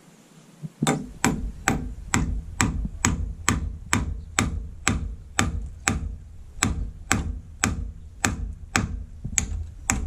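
Claw hammer striking nails into a wooden roof timber. The blows come steadily, about two a second, some twenty of them, starting about a second in.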